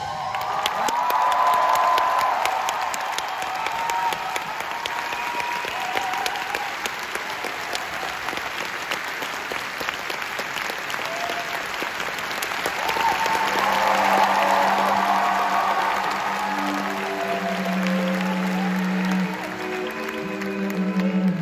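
A large audience applauding and cheering. About two-thirds of the way through, the orchestra's held low string notes come in under the applause.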